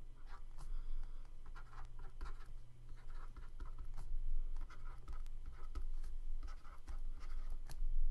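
A stylus writing short letters and commas on a pen tablet: a series of brief scratches and taps over a steady low hum.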